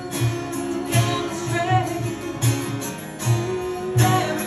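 Live acoustic guitar strummed in a steady rhythm, with a woman singing a short phrase about halfway through.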